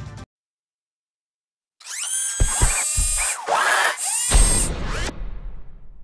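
Background music cuts off just after the start, followed by about a second and a half of silence. Then a logo sting of synthetic sound effects plays: sweeping whines that glide up and down, mechanical drill-like whirring and several sharp hits. It ends about a second before the close.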